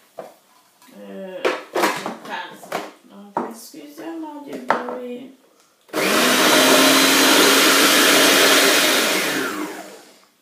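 Kenwood food processor motor running at full speed for about four seconds, crushing chillies, garlic and parsley with a little water into a paste. It starts abruptly about six seconds in and winds down just before the end.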